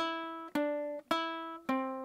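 Baritone ukulele strummed four times, about half a second apart, each chord ringing and fading before the next; the chord changes on the last strum.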